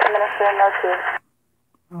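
A voice transmission on a fire dispatch channel, played back from a recording through a handheld scanner's speaker. It sounds thin and narrow like two-way radio, and cuts off abruptly a little past halfway when the playback is stopped. A man's voice starts right at the end.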